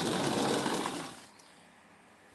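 A sliding door rolling open on its track: a steady rolling noise that fades out a little over a second in.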